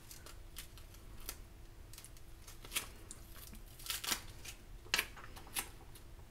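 Faint crackling and ticking of thick Siser glitter heat transfer vinyl being weeded by hand, small excess pieces peeled off the carrier sheet, with a few sharper ticks scattered through.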